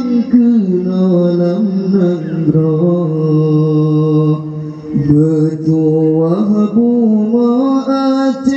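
A man singing an Acehnese qasidah (devotional song) into a microphone in long, ornamented phrases, the pitch bending and sliding, with one long held note in the middle.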